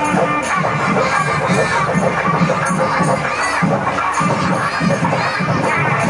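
A large crowd of many voices shouting and cheering at once, with music with a regular beat underneath.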